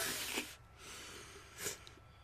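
People laughing breathily, mostly without voice: a loud burst of laughter at the start, a softer breathy stretch, then a short sharp exhaled laugh about one and a half seconds in.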